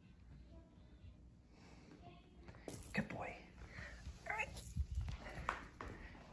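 Quiet room, then a few soft, short vocal sounds with bending pitch and several sharp clicks in the second half.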